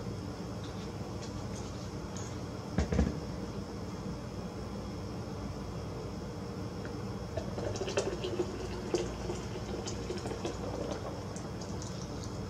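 Vegetable juice poured from a plastic juicer pitcher into a large jug, with a knock about three seconds in as the pitcher is handled.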